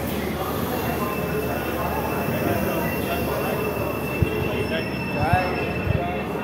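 Passenger train coaches rolling slowly along a platform, with a steady high-pitched wheel squeal from about a second in. A few sharp knocks from the wheels and couplings come near the end.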